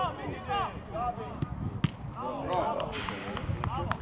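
Footballers' shouts and calls across the pitch, with several sharp thuds of the ball being kicked, the loudest about two seconds in.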